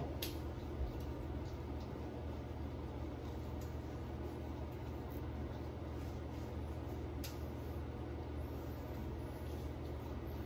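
Steady low room hum, with a few faint soft clicks.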